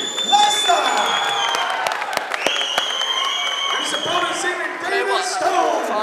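Crowd cheering and clapping over shouting voices, with two long, high, steady whistles one after the other.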